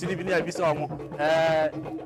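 Men's voices talking in a crowd, with one long, held, slightly falling voiced call about a second and a quarter in.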